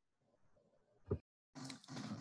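Mostly near silence, broken by a short vocal sound about a second in. Near the end comes a rough, breathy sound of a man drawing breath or clearing his throat just before he starts to speak.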